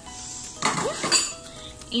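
Metal cooking pot handled on an electric coil stove: a short metallic clatter and clink just over half a second in.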